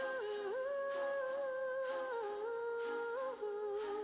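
A lone voice humming a slow, wordless melody in long held notes that step up and down in pitch.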